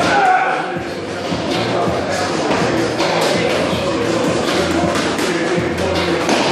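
Busy gym ambience in a large hall: music playing, indistinct voices, and occasional thuds.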